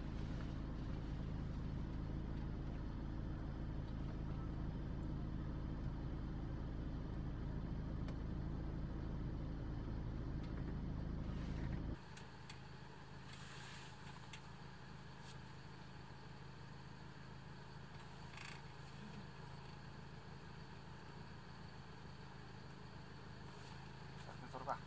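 A motor vehicle's engine idling: a steady low hum that drops away suddenly about halfway through, leaving a quiet, even outdoor background.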